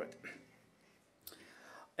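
A pause in a man's speech: a word trails off, then faint room tone, then a breath drawn in during the second half before he speaks again.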